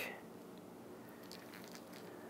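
Faint handling sounds of fingers working a thread-wrapped bait pack of minced fish and salmon eggs on a plastic fishing plug, with a few soft clicks.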